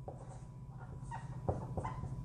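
Dry-erase marker writing on a whiteboard, giving a few faint short squeaks and a tap.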